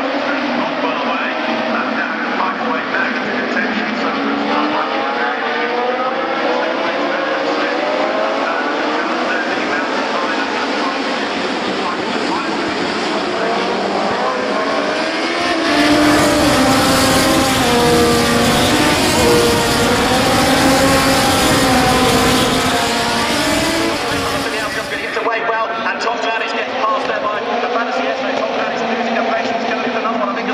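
A pack of 1970s Formula 2 racing cars at full throttle, many engines revving together, their pitches rising and dropping as the cars accelerate and brake. Near the end the sound cuts to a pack of modern Formula 2 cars racing.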